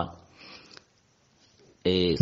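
A man's speech stops, then comes a short breath drawn in through the nose, a pause of near silence, and speech starts again near the end.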